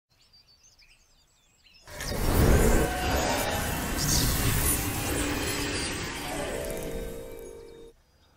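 Faint bird chirps for the first two seconds. Then a sudden, loud swell of intro music and noise with sustained tones underneath, fading out near the end.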